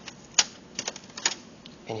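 Plastic clicks from the HP ProBook 6570b laptop's screwless bottom access cover being unlatched and lifted off: one sharp click about half a second in, then a few lighter clicks and rattles.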